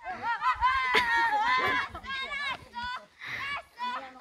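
Children's high-pitched squeals and laughter: one long call in the first two seconds, then shorter ones.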